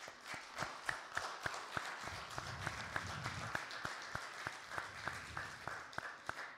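Seated audience applauding: many hands clapping at an irregular patter.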